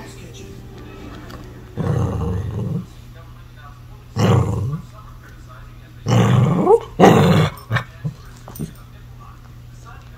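A small shaggy dog vocalizing in four short, rough bursts, each lasting between half a second and a second.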